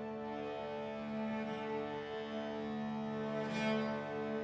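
Cello, piano accordion and a small harmonium playing slow, sustained held chords. A brighter, scratchier cello bow stroke comes near the end.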